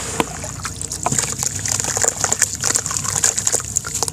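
Hands sloshing and swishing through muddy water in a plastic basin, with small irregular splashes and drips. Near the end a handful of wet sand pours and crumbles into the water.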